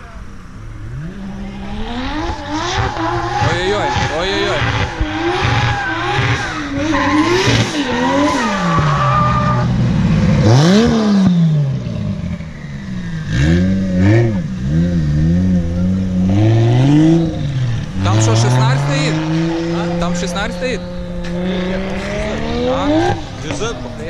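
Drift cars' engines revving hard on and off the throttle, the pitch climbing and dropping again and again, with tyres squealing as they slide through the corner.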